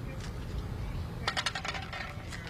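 A quick run of sharp metallic clinks, like jingling metal pieces, starting a little past halfway and lasting about half a second, over a low steady street rumble.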